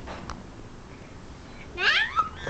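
Muffled rubbing of cloth against the microphone, then near the end a short, loud, high-pitched cry that slides up and down in pitch.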